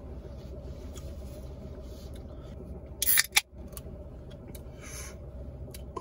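A can of Diet Pepsi cracked open: a short, sharp hiss with a click about three seconds in, and a fainter hiss near the end. A steady low rumble of a car interior runs underneath.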